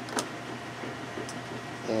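Small LCD display panels and ribbon cables being handled on a workbench: one sharp click about a quarter second in, over a steady low hum.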